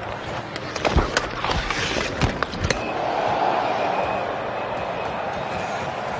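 Ice hockey play along the boards: a quick run of sharp knocks and clacks from sticks, skates and a body against the boards in the first three seconds, then arena crowd noise swelling.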